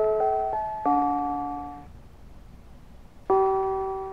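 Mr. Christmas Bells of Christmas toy playing a Christmas tune in harmony on its small bells, each struck chord ringing and dying away. A quick run of notes in the first second gives way to a pause of over a second, and a new chord sounds a little after three seconds in.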